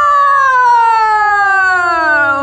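A child's long, drawn-out 'whoooa' of amazement: one held vocal note sliding slowly down in pitch, at the foaming baking soda and vinegar.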